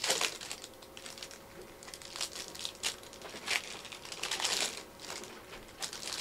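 Trading card packs and cards being handled: the wrappers crinkle and the cards rustle in the hands, in a handful of short, irregular rustles.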